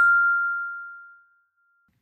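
A single chime struck once, ringing on one clear tone and fading away over about a second and a half: the page-turn signal of a read-along book.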